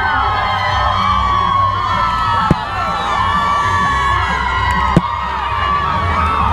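Parade crowd cheering and whooping, many voices overlapping without a break. Two sharp knocks come about two and a half and five seconds in.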